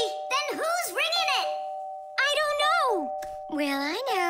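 Electric doorbell chiming over and over, two notes alternating and overlapping without a break: it rings nonstop because its wires have been connected straight together. Voices call out over it, sweeping up and down in pitch.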